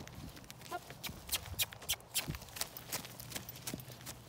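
A horse trotting: a steady run of sharp hoofbeats, about three to four a second, with the clink of tack.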